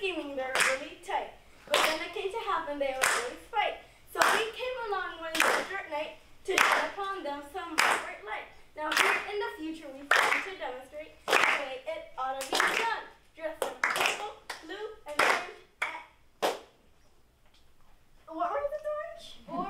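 Children clapping their hands in a steady rhythm, a little under two claps a second, while their voices chant along to the beat. Both stop shortly before the end.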